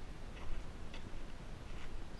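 Footsteps on dry dirt and rubble, a few light irregular ticks and crunches, over a steady low rumble of wind on the microphone.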